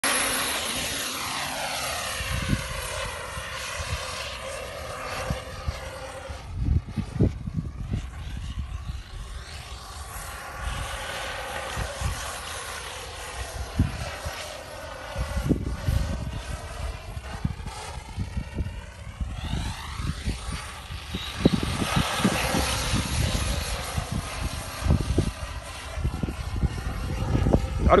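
An HSP radio-controlled buggy's motor whining as it drives across a sand dune, with wind gusting on the microphone.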